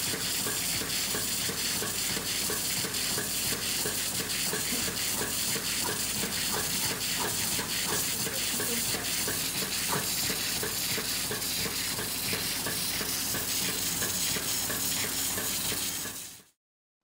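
Milking machine on a goat: a steady hiss with fine crackling as air and milk are drawn under vacuum through the teat cup and milk tube.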